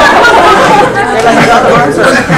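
Several girls' voices talking over one another, a loud jumble of chatter with no clear words.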